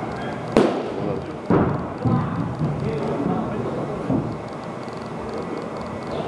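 Two sharp impacts about a second apart, the first the loudest, followed by indistinct voices.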